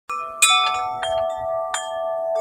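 Tubular wind chimes ringing: about four strikes, each leaving several long, overlapping tones that hang on between strikes.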